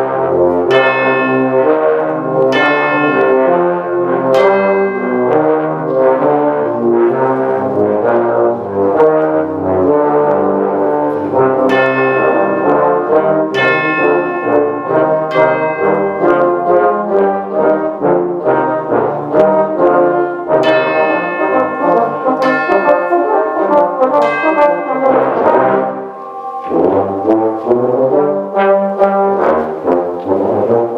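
A tuba-euphonium ensemble playing together: low tubas under euphonium lines, with repeated accented chords through the passage and a brief drop in sound a little before the end.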